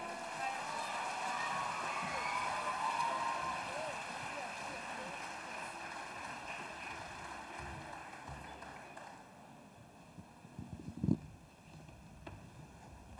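Audience applause with some voices in the crowd, fading away over several seconds after a choir song ends, followed near the end by a single low thump.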